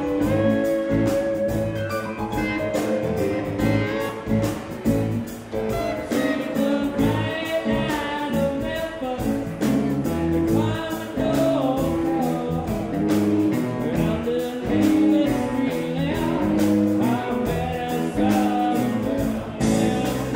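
Live rock band playing, with electric guitars, bass and a drum kit keeping a steady beat, and a man singing lead into a microphone.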